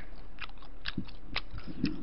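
A person chewing a mouthful of spicy tteokbokki rice cakes, with short wet mouth clicks about twice a second.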